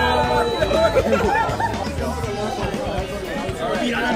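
Many people talking at once over background music.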